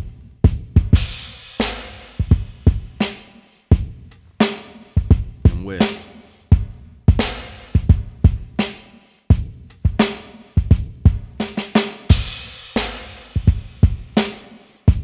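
Hip-hop drum beat playing back: kick, snare and hi-hat hits in a steady pattern. About five seconds in, a deep notch EQ cut near 360 Hz is switched in on the layered kick drum to take out a midrange tone.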